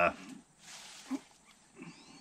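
The end of a man's drawn-out 'uh', then a soft intake of breath in the pause before he speaks again.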